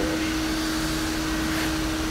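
Steady hum of running machinery, one constant tone over a low rumble, with no change through the stretch.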